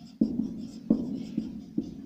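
Marker pen writing on a whiteboard: a run of short, uneven strokes as the letters are drawn.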